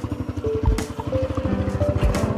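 A small motorcycle engine running with a fast, even putter, under steady background music.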